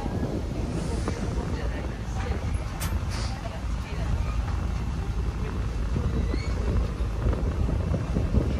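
Wind buffeting the microphone aboard a moving sightseeing boat, over a steady low rumble, with people talking faintly in the background.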